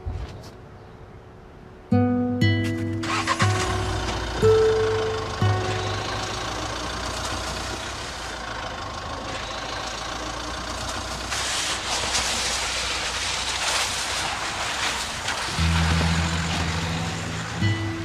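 Soft acoustic guitar music, with a car's engine and the rushing noise of the car driving off rising under it from about three seconds in. The noise is loudest shortly before the guitar notes return near the end.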